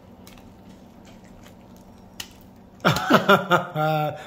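Someone chewing a bite of a sandwich on a crusty roll: soft, wet chewing with small crunchy clicks and one sharper crackle a little past two seconds in. About three seconds in, a loud voice sounds out.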